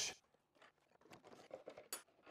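Faint handling noises: a few light taps and scrapes from about a second in, with one sharp click near the end, as a bar clamp is loosened on a plywood table-saw sled.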